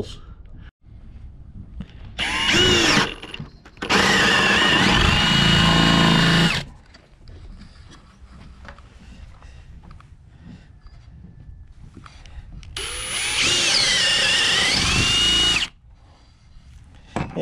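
Power drill with a spade bit boring bolt holes through a wooden door board: a short run about two seconds in, a longer one of about two and a half seconds from about four seconds in, and another of about three seconds near the end. The motor's whine dips in pitch as the bit bites into the wood and recovers.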